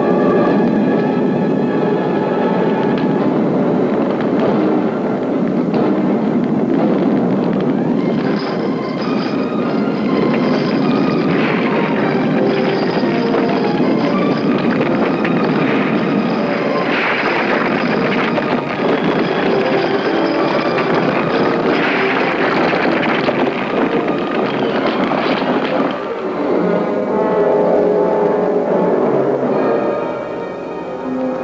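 Film soundtrack: a loud, continuous crackle and rush of fire, with a few louder surges, over orchestral music. The music comes through clearly again near the end as the crackle dies away.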